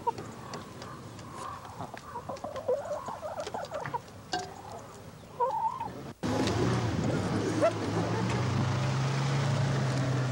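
Hens clucking in short scattered calls while pecking scraps at a feeding trough. About six seconds in the sound cuts abruptly to a pickup truck's engine running as it drives over rough grass, a steady louder noise with a low hum.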